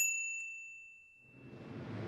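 A single bright ding from a notification-bell chime sound effect, struck once and ringing out over about a second and a half. A faint rising hiss follows near the end.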